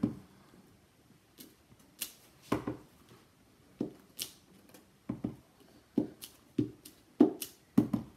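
Clear acrylic stamp block tapped onto an ink pad and pressed onto cardstock on a desk mat: about a dozen short, irregular taps and knocks, the loudest about seven seconds in.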